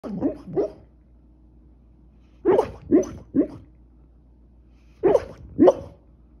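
A dog barking in its sleep while dreaming: short, soft woofs in three clusters, two, then three, then two more near the end.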